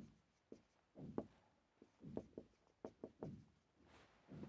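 Marker pen writing on a whiteboard: faint, short, irregular strokes and taps as letters are formed.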